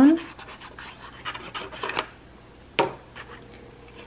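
Tip of a glue pen scratching across a paper flap as glue is spread along it, for about two seconds, then a single sharp click a little under three seconds in.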